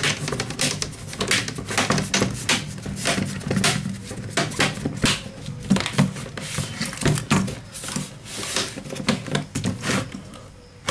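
Plastic laptop casing being handled and pressed together, with dense irregular clicks and knocks as the press-fit display panel is worked along its edge.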